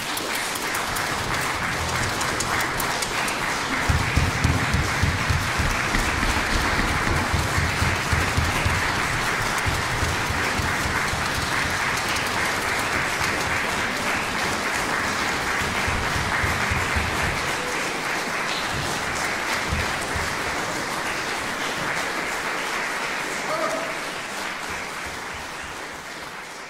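Concert audience applauding steadily at the end of the piece, with heavier low thumps mixed in through the middle stretch, dying away near the end.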